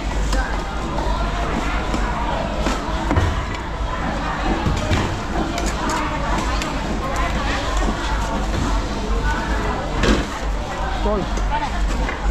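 Market hubbub: several people talking at once, with scattered sharp knocks and clatter from a fish vendor's knife on a wooden chopping block and metal bowls. The loudest knock comes about ten seconds in.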